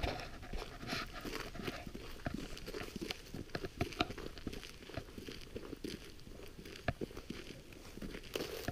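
Footsteps crunching on a snow-dusted road with clothing rustle, an irregular run of soft crunches and clicks with a few sharper ones.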